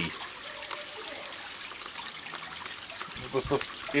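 A steady hiss from potassium permanganate and glycerol reacting and smoking inside a cardboard tube, with a brief low voice sound a little after three seconds in.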